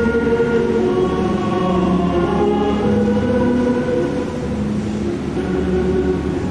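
Choral music: several voices in long held notes that change every second or so.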